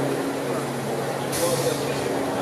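Diesel railcar approaching slowly: a low steady engine hum that fades early, then a short hiss of air about one and a half seconds in, typical of its air brakes being applied, with people's voices in the background.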